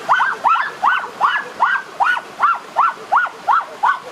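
Excited high-pitched whooping from a boy: a quick, even run of short rising-and-falling yelps, about three or four a second.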